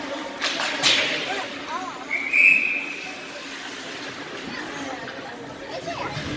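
A referee's whistle blown once, a short high blast about two seconds in that stops play in an ice hockey game. Just before it come a few sharp clacks of puck and sticks. Spectators chatter throughout.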